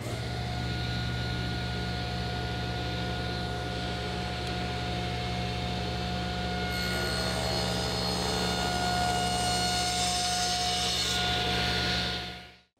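Table saw running with a steady motor hum and blade whine. About seven seconds in, the blade starts cutting into a hardwood leg, a shallow non-through kerf, and a brighter sawing noise runs for about four seconds before easing off.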